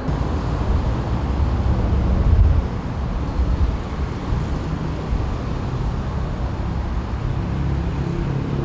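Steady low rumble of road traffic, a little louder for the first two and a half seconds.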